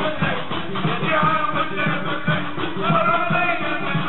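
Live Tunisian stambali music: singing voices over percussion keeping a steady, even beat.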